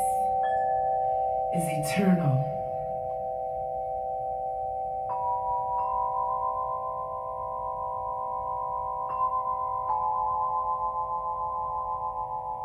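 Crystal singing bowls ringing in long, steady, overlapping tones, with new higher struck notes joining about five seconds in and again around nine and ten seconds. A brief voice-like swishing sound comes near the start.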